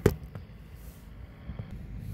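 A Knallerbse (bang snap / snap pop) thrown onto concrete, going off with one sharp crack right at the start, followed by a much fainter click.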